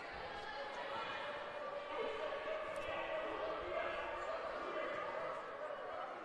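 Murmur of voices echoing in a gymnasium crowd during a free throw, with a basketball bounced on the hardwood court by the shooter.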